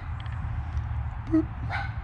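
A dog gives one short bark about a second and a third in, over a steady low background hum.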